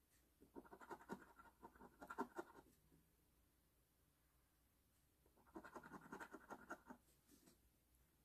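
The coating on a scratch-off lottery ticket being scratched away, faint, in two bursts of quick rubbing strokes, each about two seconds long, the second starting about five seconds in.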